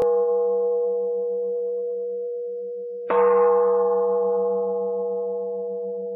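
A bowl bell rings: the last strike is still fading, then it is struck again about three seconds in and rings out with a clear, steady tone over a low, pulsing hum, slowly dying away.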